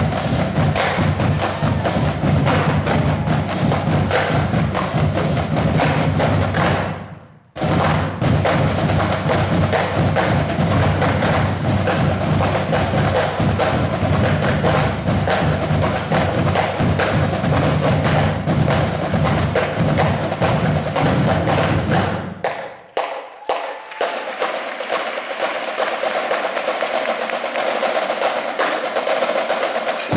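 High school drumline playing a cadence: snare drums, tenor drums and bass drums in a fast, dense rhythm. The whole line stops briefly about seven seconds in. Near the end the low bass drums drop out, leaving the higher drums playing alone.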